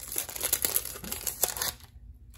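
Shiny foil wrapper of a basketball card pack crinkling as the cards are pulled out of it, stopping just before the end.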